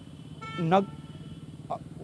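A vehicle horn sounds once, a flat steady note about half a second in that lasts around a second, over a steady low street hum.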